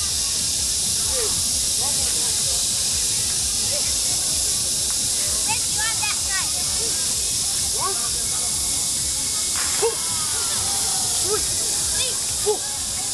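A steady high-pitched hiss throughout, with scattered short voice calls in the background and a single sharp tap about ten seconds in.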